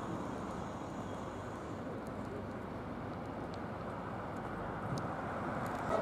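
Steady low rumble of outdoor town-street noise, with traffic going by.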